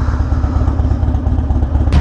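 Harley-Davidson Dyna V-twin engine with a Bassani Road Rage 3 exhaust idling with a steady, even pulse.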